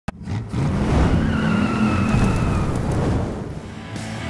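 A car engine revving hard with tires squealing, opening with a sharp click. A high squeal runs through the middle, and the engine fades near the end.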